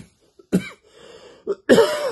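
A man coughing and clearing his throat: short coughs about half a second and a second and a half in, then a longer, louder cough near the end.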